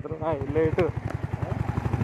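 Motorcycle engine running at a steady cruising speed, a quick, even pulsing from the exhaust, with a person's voice speaking briefly near the start.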